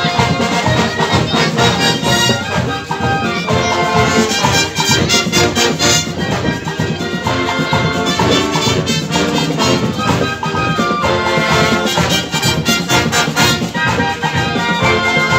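Marching band playing live: brass (trumpets, trombones and sousaphones) over percussion keeping a steady beat.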